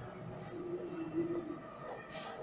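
Chalk scraping on a blackboard in short strokes as lines are drawn. A steady low humming tone sounds for about a second in the middle and is the loudest thing heard.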